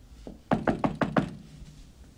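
Knocking on a door by hand: about five quick knocks in under a second.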